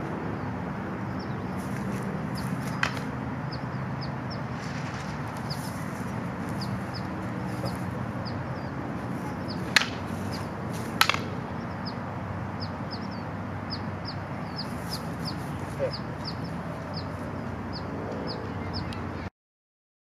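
A few sharp clacks of short wooden fighting sticks striking each other, the two loudest about a second apart near the middle, over steady outdoor background noise with many short, repeated bird chirps. The sound cuts off abruptly just before the end.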